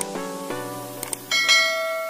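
Light plucked background music with a couple of soft clicks, then a bright bell chime rings out about two-thirds of the way in and hangs on. It is a subscribe-button notification-bell sound effect.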